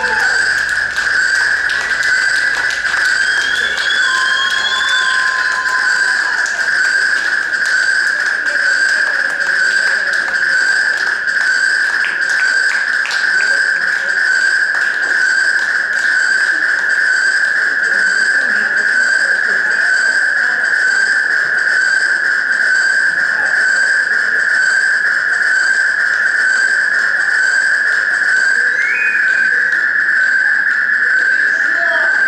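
A loud, steady high-pitched electronic drone: one held tone with fainter, higher overtones above it, running unchanged. A few short whistle-like glides sound over it in the first few seconds.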